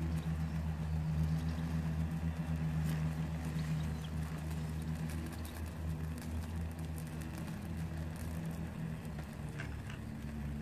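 Small fire of paper and dry tinder burning, with a few faint crackles, over a steady low mechanical hum.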